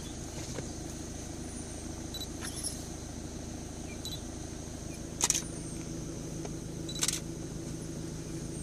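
Three sharp single-lens reflex camera shutter clicks, about two and a half, five and seven seconds in, the middle one loudest, over a steady low hum.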